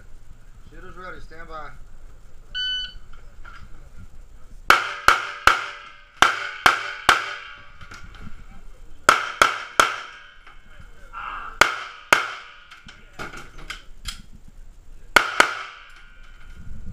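A shot timer's beep, and about two seconds later a string of handgun shots fired mostly in quick pairs, each ringing inside a metal bus body.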